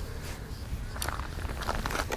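Scattered light clicks and scuffs, one about a second in and several near the end, from ice-fishing gear and feet being moved on the ice, over a low wind rumble on the microphone.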